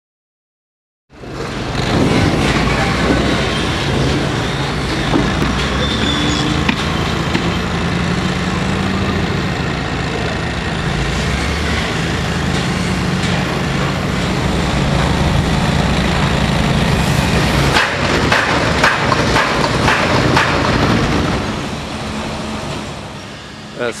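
Heavy construction machinery at work: a wheel loader's diesel engine running steadily, starting about a second in. Later comes a run of clanks and knocks as it loads dirt into dump trucks.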